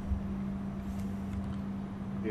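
A steady low hum with a faint rumble under it, the room's background noise between sentences.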